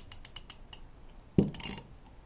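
Steel ratchet and socket being handled: a quick run of small metallic clicks and clinks, then a louder knock with a ringing metal clank about a second and a half in.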